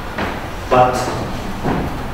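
A man talking, the words not picked up by the transcript, with a short knock about halfway through.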